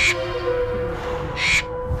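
Short, harsh bird calls, one at the start and another about a second and a half later, over the steady held tones of background music.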